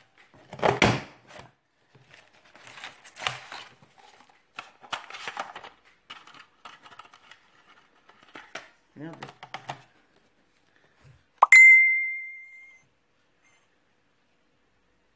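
A large scalloped-circle craft punch being tested on paper. First the paper rustles as it is handled and fed into the punch. Near the end the punch snaps through it with one sharp click, followed by a clear ringing tone that fades over about a second.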